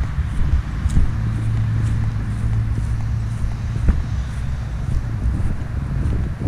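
Low rumble of wind and handling on a hand-held camera's microphone as it is carried outdoors, with a steadier low hum for a few seconds in the middle and a few faint knocks.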